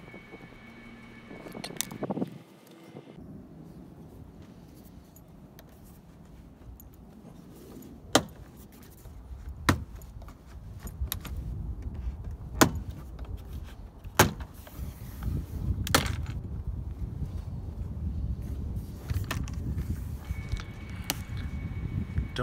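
BMW E46 plastic front door trim panel being tugged and pushed against the door. About five sharp knocks and clacks ring out over the second half, over low rumbling handling noise. The panel does not come free, because its clips release only when it is pulled straight back.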